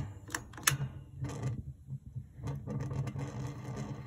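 A few sharp small clicks at uneven intervals over a low steady hum, from hands working a propane heater's pilot control and a long lighter held at the pilot.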